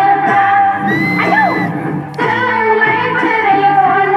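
Loud Bodo folk dance music with singing over a regular beat, with a short held high note about a second in and a brief drop in the music just after two seconds.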